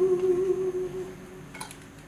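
A woman singing fado holds one long, steady note that fades out about a second in, followed by a short, quieter pause before the next phrase.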